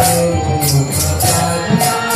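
Devotional kirtan: voices singing over metallic hand-cymbal strikes about twice a second, with a drum beneath.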